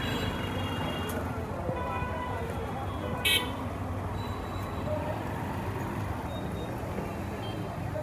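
Street traffic noise: motorbikes and auto-rickshaws passing with a steady low rumble, and a brief high horn toot about three seconds in.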